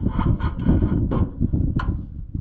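Off-road race car heard from inside the cab: the engine running under loud, uneven noise of the chassis knocking and rattling over rough dirt.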